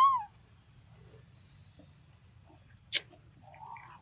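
Baby macaque giving one short squeak at the start, its pitch rising and then falling, followed by a single sharp click about three seconds in.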